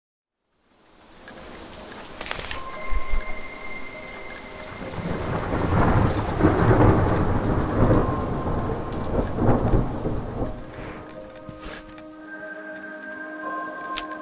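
Steady rain falling with rolling thunder that builds to its loudest in the middle and then fades.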